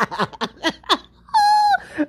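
A woman laughing briefly, then one short high-pitched call a little past the middle.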